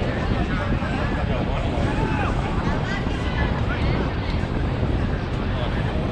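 Steady low rumble of wind on the microphone, with scattered voices talking across the field.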